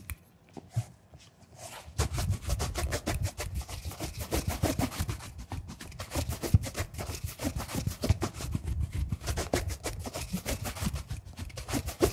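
A bristle shoe brush swept rapidly back and forth over a polished leather shoe, a quick run of brushing strokes that begins about two seconds in after a few light handling clicks.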